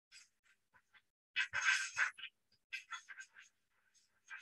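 A plasma ball's discharge picked up by an audio plug touched against the globe and played through an iPhone's speaker: faint, irregular bursts of sound, the loudest cluster about one and a half seconds in.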